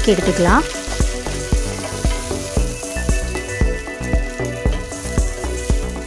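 Okra (ladies' finger) pieces sizzling as they fry in oil in a steel pan, with a spoon knocking and scraping against the pan again and again as they are stirred.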